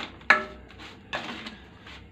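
Chopsticks clicking once, sharply, against a stainless steel pot near the start, followed by fainter handling noise as pieces of marinated meat are shifted in the pot.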